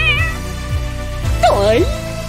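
A cat's meow sound effect right at the start, over background music with a steady low beat. A second, longer pitched cry that dips and rises follows about a second and a half in.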